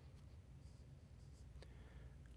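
Near silence: room tone with a steady faint low hum, a few faint rustles and one soft click.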